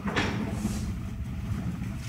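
Handling and rustling noise at a table microphone over a steady low room rumble: a short knock just after the start, then a brief soft rustle.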